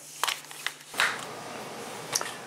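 A few light clicks and rustles of a pistol with a weapon light being handled at an inside-the-waistband holster, then a steady faint hiss.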